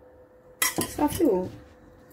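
A metal spoon clattering against dishware in a quick run of clinks, starting about half a second in and lasting about a second.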